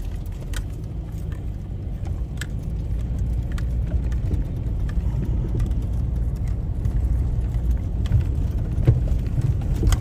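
Car driving slowly over a rough, stony dirt road, heard from inside the cabin: a steady low engine and road rumble that builds slightly, with a few scattered sharp knocks as the tyres go over loose stones.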